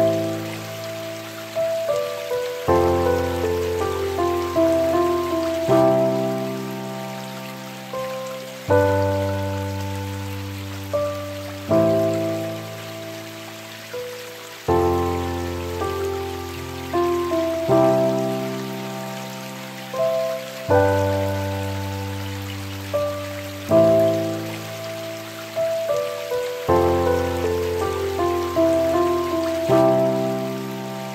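Steady rain falling, mixed with slow, gentle instrumental music: struck notes that ring and fade, with the chord changing about every three seconds.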